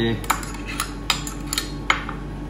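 Metal spoon clinking against small stainless steel pots as orange segments are scooped out: about five short, sharp clinks.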